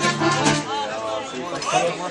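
Mariachi band playing accordion and guitar, with people talking and chattering over the music. The music drops back a little under a second in.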